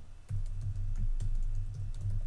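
Typing on a computer keyboard: a quick, irregular run of keystroke clicks over a low, uneven hum.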